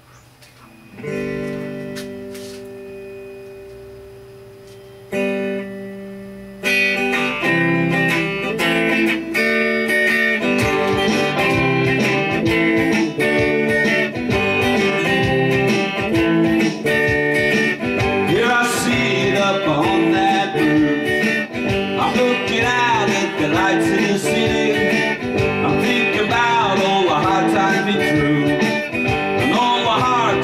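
Electric guitar played through a treble booster: a chord struck about a second in and left to ring and fade, another chord around five seconds, then continuous riffing from about seven seconds. A man's voice sings over the guitar from a little past halfway.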